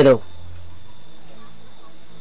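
Crickets chirping steadily, short high chirps about four times a second, after a spoken word ends at the very start.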